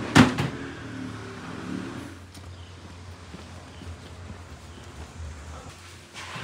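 A single sharp knock just after the start, then a low steady rumble of an idling vehicle engine with a few faint clicks.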